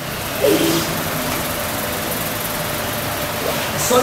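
Steady background noise, an even hiss like a fan or room air, with a brief murmur of a voice about half a second in.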